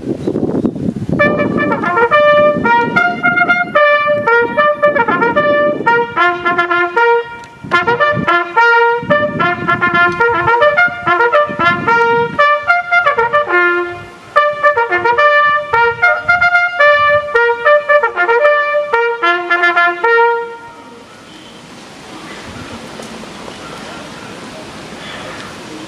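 Small ensemble of trumpets playing a ceremonial fanfare of short, crisp notes in a bugle-call style, with two brief pauses, stopping about twenty seconds in; a quiet outdoor murmur remains after.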